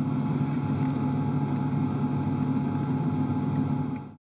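Steady hum and rush of the International Space Station's cabin ventilation fans and equipment, with a low drone and a few faint steady tones in it.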